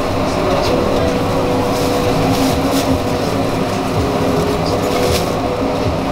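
Steady mechanical hum with a low rumble, likely a motor or machine, with a few short light crackles in between.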